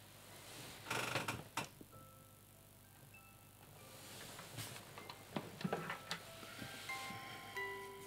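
Bedding rustling, then a child's musical toy playing a simple tinkling tune of single chime-like notes that grows busier toward the end, with a few rustles as it is handled.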